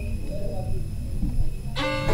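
Low background rumble with faint indistinct voices, then instrumental background music with plucked and bowed strings cutting in suddenly near the end.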